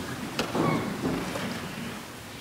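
Quiet room noise picked up by an open pulpit microphone, with low rustling and a single sharp click about half a second in.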